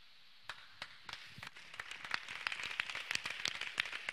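Hand clapping from a group of people, starting with scattered claps about half a second in and building into denser applause.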